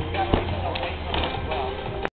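Background music with voices talking over it in a gym hall, and a single sharp thump about a third of a second in.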